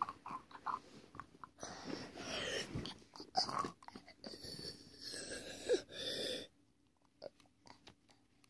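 A person voicing breathy monster growls for about five seconds, starting about a second and a half in, as if for the toy monster. A few light handling clicks come before it.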